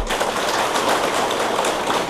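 Audience of seated listeners applauding: a steady, even patter of many hands clapping at once.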